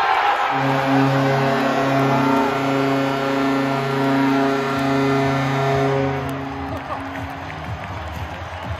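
Hockey arena goal horn sounding one long steady blast over a cheering crowd after a goal. The horn starts about half a second in and stops after about six seconds, while the cheering goes on.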